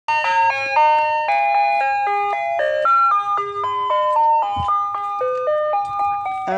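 Ice cream truck's electronic chime playing its jingle: a tinny, music-box melody of short, evenly paced notes that runs without a break.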